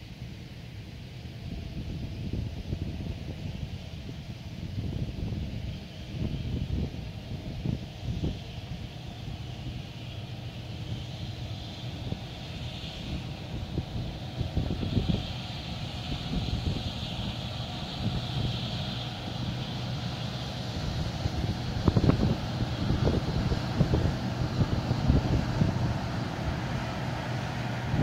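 Combine harvester running as it works a soybean field, drawing closer and growing louder, with a steady low engine note and a higher whine from the threshing machinery. Wind gusts buffet the microphone throughout.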